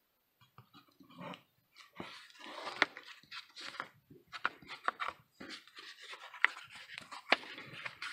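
Gemini corrugated cardboard comic mailer being folded around a bagged and boarded comic: faint, irregular scraping and rustling of cardboard with several sharp clicks, starting about a second in.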